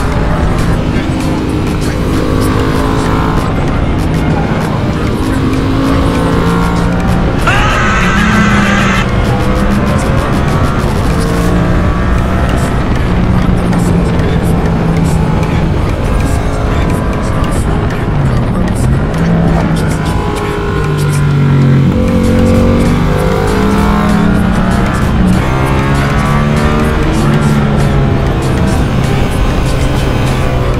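Yamaha MT-07's parallel-twin engine running hard through bends, its pitch stepping up and down with throttle and gear changes, with wind rush on the bike-mounted camera.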